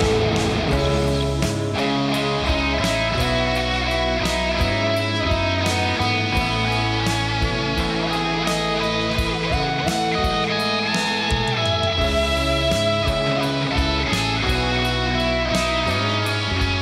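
Enya Nova Go Sonic carbon-fibre electric guitar played on its bridge humbucker in series, taken straight from the guitar's output into an audio interface, with a distorted high-gain preset. It plays a rock riff over a backing track with a steady beat and a moving bass line.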